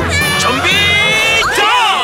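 A group of high-pitched cartoon voices shouting and cheering together over music, with one long held cry in the middle and a rising-and-falling cry near the end.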